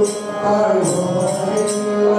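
Devotional group singing (bhajan) with a sustained harmonium drone, and small hand cymbals jingling in a steady beat.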